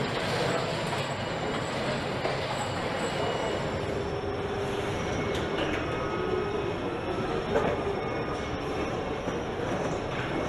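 Steady rolling mechanical rumble with a thin squealing tone and a few sharp clanks, from an airliner being towed on its wheels by an aircraft tug across a hangar floor.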